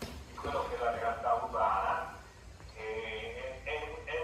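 A man's voice speaking Italian over a video call, played through the hall's loudspeakers, so it sounds thin, with little bass.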